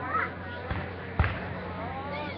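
Two dull, low thumps of fireworks, the second about a second in and the louder, over people talking close by.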